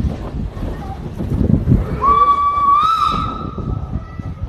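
Steam locomotive's whistle blowing one held note for just over a second, starting about halfway through and bending slightly upward near its end, over the rumble and clatter of the carriage running on the rails.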